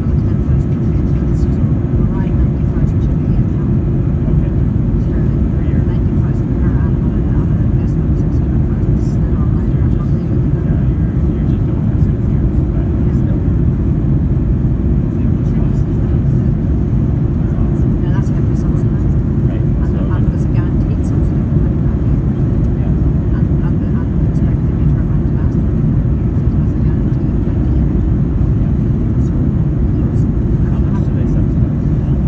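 Steady low roar of engine and airflow noise heard inside the cabin of an Airbus A330-243 climbing after take-off, from its Rolls-Royce Trent 700 engines at climb power. It holds level with no change in pitch.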